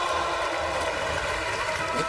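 Skateboard wheels rolling steadily across a smooth skatepark course, over the background noise of a large arena crowd.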